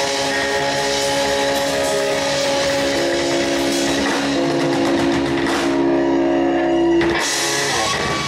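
Live rock band of electric guitar, bass and drums holding a long sustained final chord. It cuts off about seven seconds in with a last crashing hit as the song ends.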